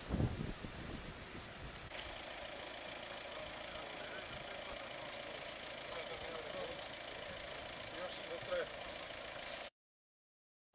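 Car engines idling in a stopped queue of traffic, with faint indistinct voices. Wind buffets the microphone in the first second, and the sound cuts off abruptly just before the end.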